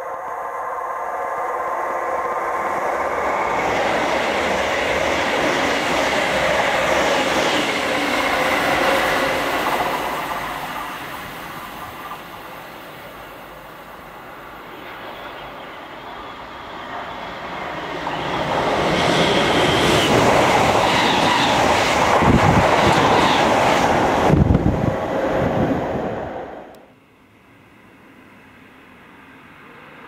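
Train running through a main-line station at speed, wheel and rail noise swelling and easing once, then rising to its loudest with rapid wheel clatter as it passes. The sound cuts off abruptly a few seconds before the end, leaving a much quieter background.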